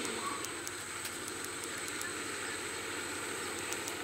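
Steady outdoor background noise from location sound, with faint scattered ticks.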